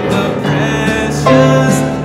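Live instrumental music on grand piano and guitar, sustained chords changing every second or so, with a louder chord about a second in.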